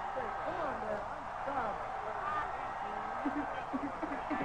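Indistinct voices, with no clear words, over a steady background.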